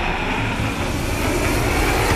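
Aircraft engine noise: a steady, dense rush with a faint high whine that sinks slightly in pitch.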